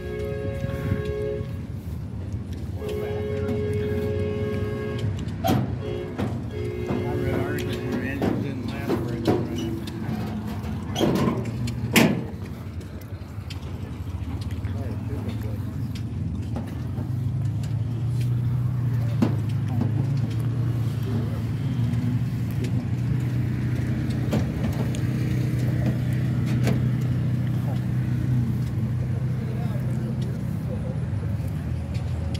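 Outdoor show ambience with background chatter. In the first eight seconds a horn sounds three times, each blast steady in pitch and one to two seconds long. From about halfway a nearby engine runs with a steady low hum.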